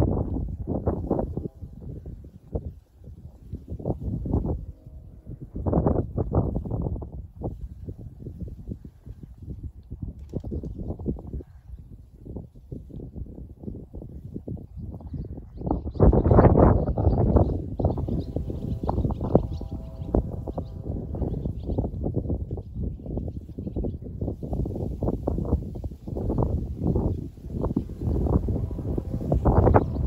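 Wind buffeting the microphone: irregular low rumbling gusts, heavier from about halfway through.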